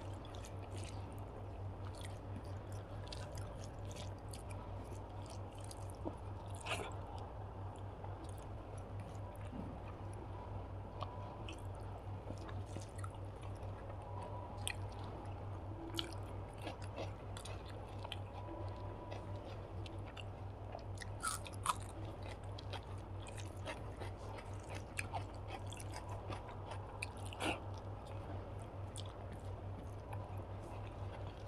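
Close-miked chewing of a rice meal eaten by hand, with scattered soft crunches and wet mouth clicks. A steady low hum runs underneath.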